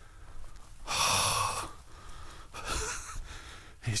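A man breathing out heavily, a loud breathy exhale about a second in, then a fainter breath near three seconds.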